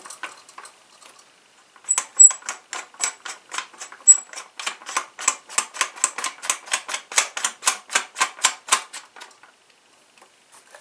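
Adjustable buttstock of a Cyma CM.702 airsoft sniper rifle clicking as it is adjusted: an even run of sharp clicks, about four a second, starting about two seconds in and stopping shortly before the end.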